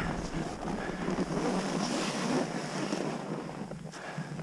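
Skis sliding over chopped-up snow, a steady hiss, with wind rushing over the microphone.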